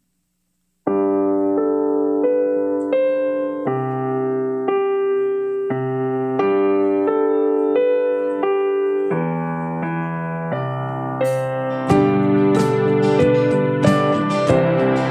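A stage keyboard plays a slow chord intro on an electric-piano sound, starting about a second in and changing chords every second or so. Near the end, drums and cymbals come in as the worship band joins.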